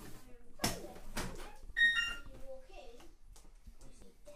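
A child's voice in a small hallway, with two sharp knocks in the first second or so and a brief high squeal about two seconds in.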